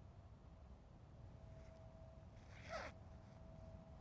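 One short, forceful breath out, about half a second long, a little past the middle of a near-silent stretch, with a faint steady hum underneath.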